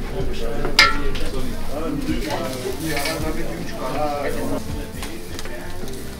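Kebab skewers sizzling over a bed of glowing charcoal, a steady hiss, with one sharp clink just under a second in.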